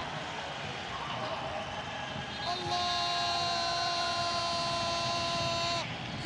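Stadium crowd cheering a goal; about two and a half seconds in, an air horn in the stands sounds one long, steady blast of about three seconds, then cuts off suddenly.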